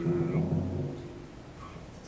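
A pit orchestra holds a low final note with a drum rumble underneath. It dies away about a second in, and a man says "Good" over the end of it.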